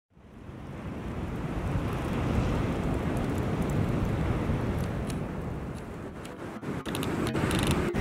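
Wind buffeting the microphone: a steady low rushing rumble that fades in at the start, with a few short crackles near the end.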